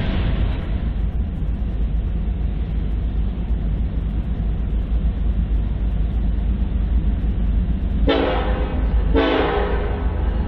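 BNSF diesel freight locomotives approaching with a steady low engine rumble, then sounding their air horn twice in quick succession near the end.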